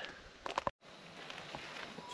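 Faint outdoor background noise with a few light clicks, broken by a brief total dropout about three-quarters of a second in, after which a steady faint hiss continues.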